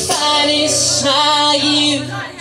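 A man singing long held notes with his acoustic guitar, in a live solo performance.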